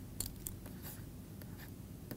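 Faint taps and short scratching strokes of a stylus writing on a tablet, a few separate strokes over the couple of seconds.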